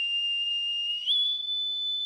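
A hand-held metal whistle on a cord blown in one long, clear, steady note that steps up to a higher pitch about a second in.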